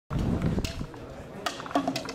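Indistinct voices at an outdoor football match, with a short call near the end, over a low rumble.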